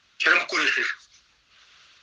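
Speech only: a man's voice says a short phrase lasting under a second, then a pause with faint hiss.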